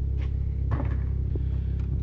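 A steady low hum with a few light knocks and handling noises as a trash can full of discarded wiring parts is searched through.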